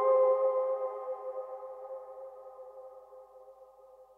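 Dave Smith Instruments Tetra analog synthesizer patch: a held chord of several steady tones fading slowly away, the release tail of the last notes with a little added reverb.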